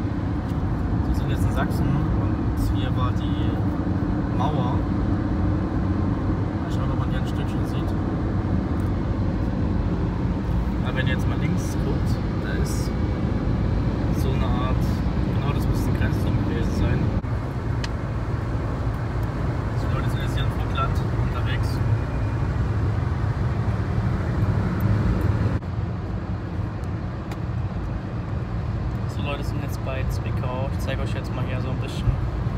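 Steady low rumble of road and engine noise inside a car cruising on a motorway, with scattered light clicks. The noise drops abruptly twice, a little past halfway and again later.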